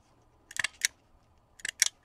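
Long-reach stapler driving a staple through folded paper: a couple of sharp clicks, then a quick cluster of clicks near the end.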